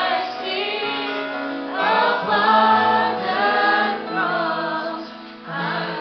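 A live worship band of drums, guitars and keyboard playing a slow song, with voices singing along; the music swells about two seconds in and eases off near the end.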